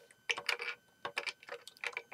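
Plastic LEGO pieces clicking and tapping against each other under the fingers as the model is handled, in irregular clicks that bunch up about half a second in and again near the end.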